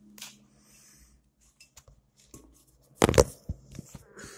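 Electrician's pliers and other hand tools being picked up and handled, with a few faint clicks, then a loud clatter of knocks about three seconds in and two or three sharp clicks after it.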